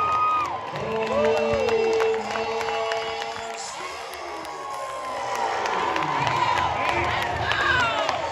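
Home crowd at a softball game cheering, with shrill whoops and held yells from fans close by, as a home-run hitter rounds the bases to her teammates waiting at home plate.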